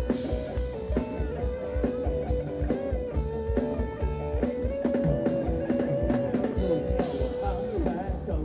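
Live band playing Thai ramwong dance music: a sustained, sliding lead melody over a steady drum beat.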